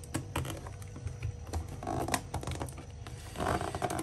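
Snap-off utility knife slitting the seal of a cardboard box, with the box being handled: a run of small irregular clicks and scratches, with two louder scraping rustles about two seconds in and near the end.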